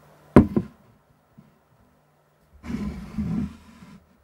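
A sharp knock with a short ring as an aluminium beer can is set down on a wooden table, then about two seconds later a second-long sliding, rubbing noise as the glass is moved on the table.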